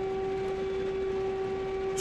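Air-raid siren holding one steady pitch, heard from inside a car.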